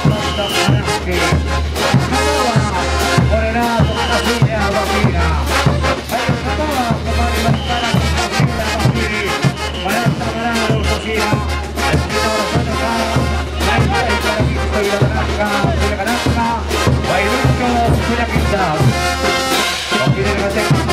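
Live Bolivian brass band playing a morenada: trumpets and trombones carrying the tune over a steady bass line, with drums and cymbals keeping a dense, regular beat.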